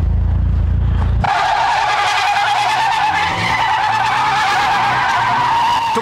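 A deep, low car-engine rumble for about a second, then an abrupt switch to a long, steady tyre squeal from a car drifting through a corner, rising slightly in pitch.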